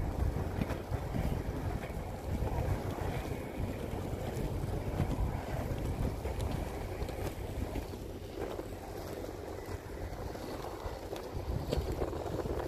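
Wind rumbling on a phone microphone over the steady rolling of inline skate wheels on pavement, with a few faint clicks.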